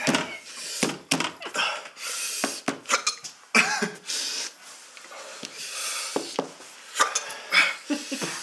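Two men coughing, sniffing and blowing out short, hard breaths in a string of sudden bursts. This is a reaction to the burn of raw habanero pepper combined with mouthwash.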